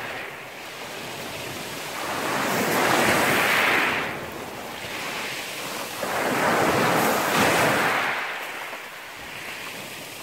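Small sea waves breaking on a pebble beach and washing up the shore. Two surges swell and fall away, one about two seconds in and one about six seconds in, with a softer steady wash between them.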